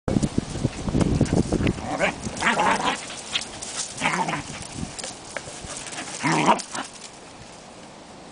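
Scottish terrier puppy playing with a basketball: a run of dull thumps and scuffles as it pounces on and knocks the ball in the first two seconds, then a few short barks as it chases it.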